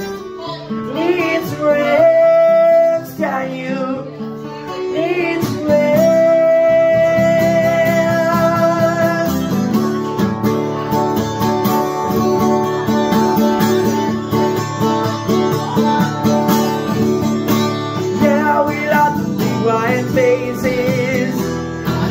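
Acoustic guitar played steadily with a man's voice singing long held notes in the first half and again near the end. Between those, the guitar carries on by itself.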